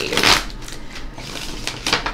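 A tarot deck being shuffled by hand: a loud rush of cards at the start, then softer, steady rustling with small clicks.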